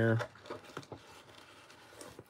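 A man's drawn-out spoken word ends just after the start. After it come faint rustling and a few light clicks from things being handled while he searches a case for a knife.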